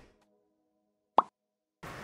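Background music dying away into near silence, broken by one short, sharp pop a little over a second in.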